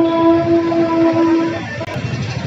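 Train horn at a railway station sounding one long steady note, which cuts off about a second and a half in.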